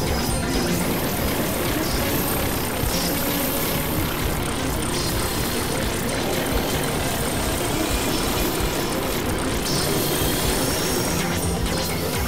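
Experimental synthesizer noise music: a dense, steady wash of rumbling noise with faint high whistling tones drifting above it.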